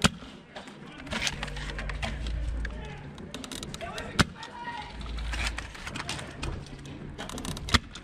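Incoming airsoft BB fire: scattered sharp clicks and cracks, with three louder snaps at the start, about four seconds in, and near the end.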